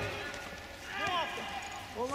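Shouting voices on an outdoor football pitch: a short call from a player about a second in, over open-air background noise.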